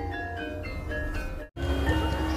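Javanese gamelan music for a lengger dance: metallophones ring a stepping melody of sustained, overlapping notes. The sound cuts out completely for an instant about three-quarters of the way through, then resumes.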